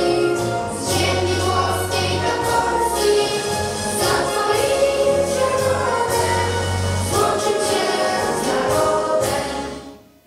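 A standing assembly of children and adults singing an anthem together over instrumental backing; the singing and music fade out at the very end.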